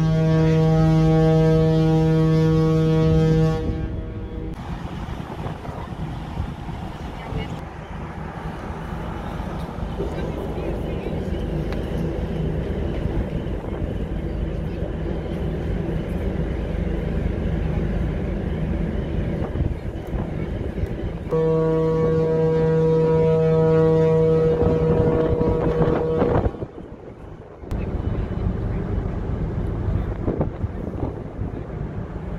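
Ferry Pride of Kent's ship's horn sounding a long, deep departure blast that stops about three and a half seconds in, then a second long blast from about 21 to 26 seconds in, with wind and deck noise between them.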